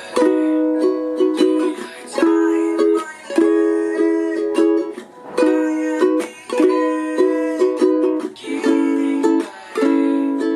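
A wooden ukulele strummed in a steady rhythmic pattern, moving through a repeating chord progression.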